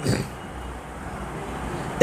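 Low, steady background rumble with no distinct events.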